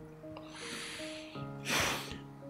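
Slow, sad background music of steady held notes. A soft breathy sniff comes about half a second in and a sharp, loud sniff near the end, the wet sniffling of someone crying.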